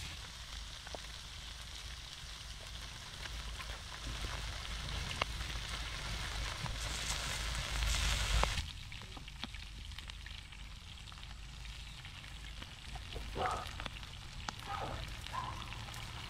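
Shrimp frying in a wide black steel pan over an open wood fire: a steady sizzle that grows louder through the first half, then drops suddenly to a quieter hiss with scattered crackles.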